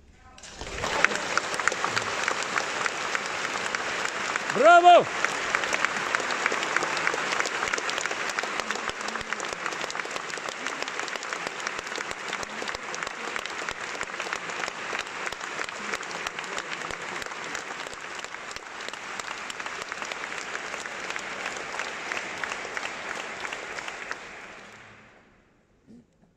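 Concert-hall audience applauding, breaking out just as the orchestral music ends and continuing steadily. About five seconds in, one voice gives a loud, rising shout over the clapping.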